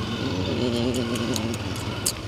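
Motorcycle engine running steadily at low speed as the bike rolls slowly along, with a brief indistinct voice in the middle.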